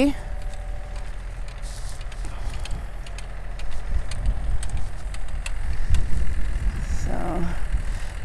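Distant tractor running a rear-mounted rototiller, a steady low engine hum, with wind buffeting the microphone in gusts that are strongest in the middle.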